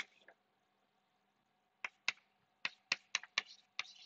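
Chalk tapping and scratching on a blackboard as letters are written: a sharp tap at the start, a quiet pause of about a second and a half, then a quick run of short taps and strokes.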